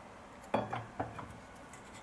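Mercedes W204 rear brake caliper clinking metal-on-metal against the pads and carrier as it is worked back into place over new pads: two sharp clinks about half a second apart.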